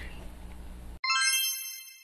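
A bright chime sound effect starts suddenly about a second in: a cluster of high ringing tones that fades away within about a second. Before it, faint room noise.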